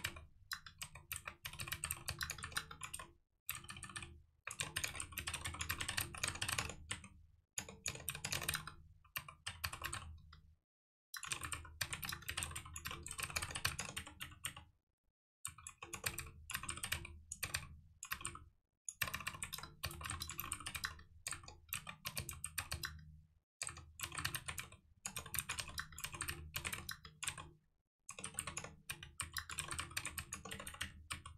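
Fast typing on a computer keyboard, in bursts of a few seconds each with brief pauses between them.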